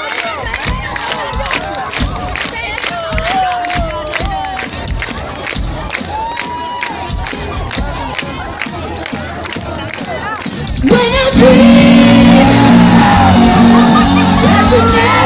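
Concert crowd singing along over a steady beat of sharp hits about twice a second. A little before the end the full band comes back in much louder.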